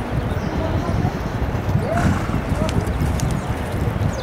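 Racehorse galloping on a dirt track: hoofbeats heard under heavy wind noise on the microphone.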